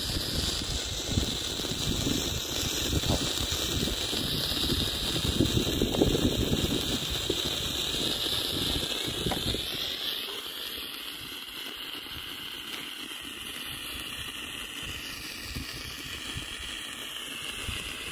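Red Bengal flare on a stick burning with a steady hiss. Wind rumbles on the microphone in the first half and eases off about ten seconds in.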